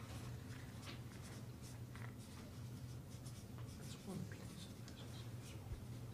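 Marker pen writing on flip-chart paper in short scratchy strokes, faint, over a steady low room hum.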